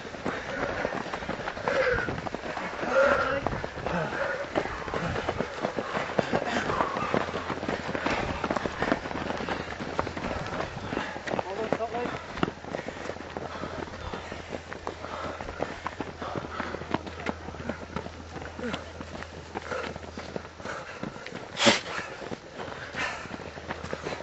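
Footsteps of a stream of fell runners on a dry dirt path, a close, continuous patter of strides. Indistinct voices are heard in the first few seconds, and a single sharp knock sounds near the end.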